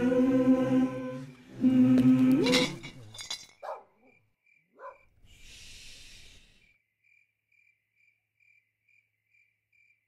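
Voices humming a slow lullaby in held notes, fading out about three seconds in. Two short squeaky calls and a soft breathy hiss follow, while a faint high chirp repeats two or three times a second into near silence.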